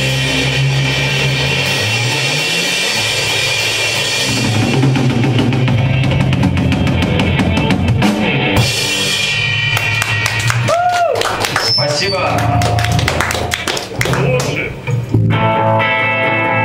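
A live rock band playing on drum kit and electric guitar. In the second half the held chords mostly drop out and the drums carry on with sharp drum and cymbal hits, and the full band comes back in together near the end.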